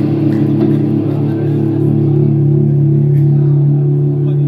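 A live rock band's amplified instruments holding one steady, sustained low chord through the PA, with no drum beat under it.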